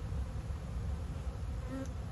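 Steady hum of many honey bees flying around the entrances of a row of hives, with a brief higher-pitched buzz near the end. The hives are busy with foragers during a strong nectar flow.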